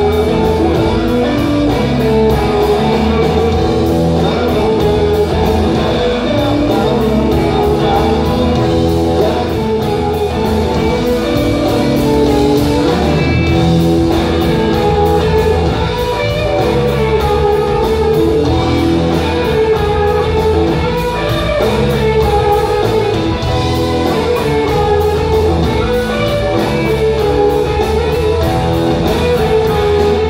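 Live rock band playing, electric guitar out front over bass guitar and a steady drum beat.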